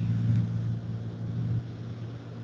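A steady low hum with a faint background hiss.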